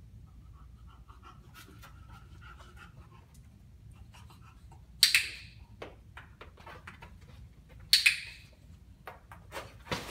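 Two loud double clicks of a dog-training clicker, about three seconds apart, marking the bulldog's interest in the platform. Between them, faint breathing from the English bulldog and light scattered ticks.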